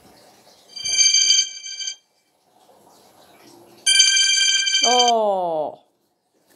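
Apartment door intercom ringing: two steady electronic buzzer tones about a second long each, the second running into a falling, sliding tone.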